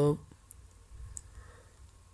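Two faint clicks of a computer mouse, about half a second and just over a second in.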